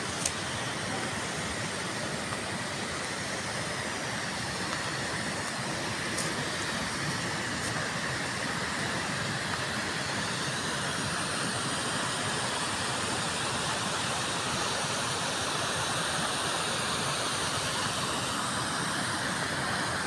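A rocky mountain stream rushing over stones, a steady noise that grows slightly louder toward the end.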